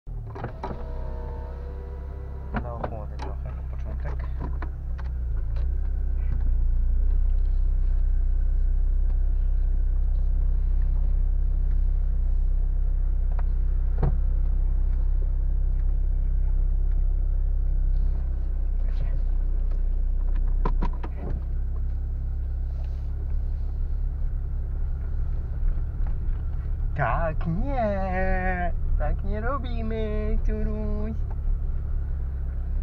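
Car cabin noise while driving: a steady low road and engine rumble that grows louder about six seconds in and drops back about twenty-one seconds in. A voice comes in briefly near the start and again near the end.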